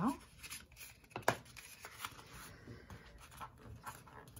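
Soft rustling and rubbing of a flattened cardboard paper towel tube being handled and pressed flat by hand, with one sharp tap about a second in.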